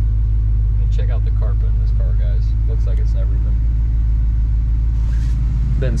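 1968 Chevrolet Camaro's numbers-matching 396 big-block V8 idling steadily just after being started, a deep even rumble.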